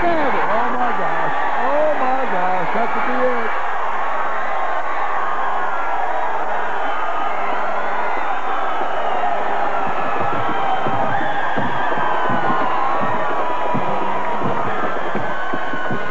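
Football crowd cheering and yelling at a fumbled kickoff return, many voices overlapping without a break and a few louder shouts in the first few seconds.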